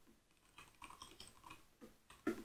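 Faint typing on a computer keyboard: a quick run of soft keystroke clicks starting about half a second in.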